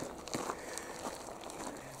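Faint, steady rolling noise of bicycle tyres on a gravel and dirt track, with a few light ticks from grit under the wheels.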